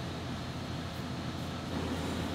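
Steady low hum and hiss of background noise, without distinct knocks or clicks.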